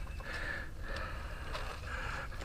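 Footsteps on a gravel trail while walking uphill, a soft step about every half second.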